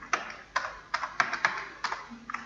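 Typing on a computer keyboard: a quick, irregular run of keystrokes, about eight clicks in two seconds.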